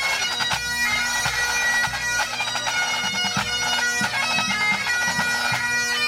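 Full pipe band playing: Highland bagpipes with steady drones under the chanter melody, and a rapid pattern of pipe-band snare drum strokes with bass drum beneath.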